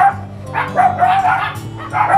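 A dog barking several times in quick succession, over background music with steady held notes.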